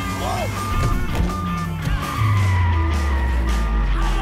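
Movie-soundtrack car chase: a car engine revving under background music, the engine growing louder about two seconds in, with a short laugh near the start.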